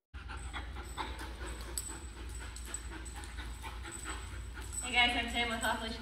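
A seven-month-old German Shepherd puppy panting over a steady low room hum, with a woman's voice briefly about five seconds in.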